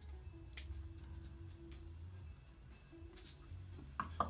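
Faint ticks and short puffs of air from a rubber bulb pump, squeezed a few times to inflate a balloon inside the nasal passage. A low steady hum and a held tone run underneath.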